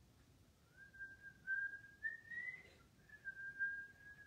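A man whistling a short tune in imitation of a flute: a few held notes that step up in pitch, a short pause, then one long held note.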